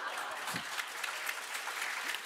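Audience applauding: many hands clapping in a steady patter.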